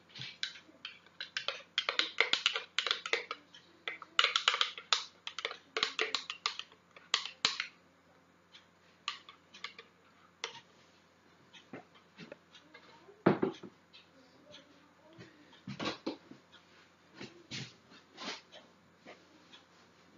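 Metal teaspoon stirring hot chocolate in a ceramic mug, clinking against the sides in quick runs for the first several seconds, then in scattered single taps.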